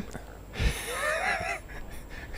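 A faint, wavering, high-pitched voice off-mic, about a second long, just after a soft thump.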